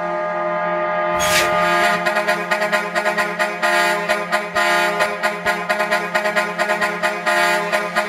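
Club dance music in a build-up: a sustained chord with no bass under it, a swell about a second in, then a rapid, even drum roll running on until the beat drops just after.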